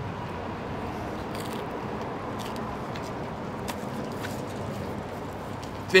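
Steady outdoor street background: a low, even hum of distant traffic, with a few faint ticks.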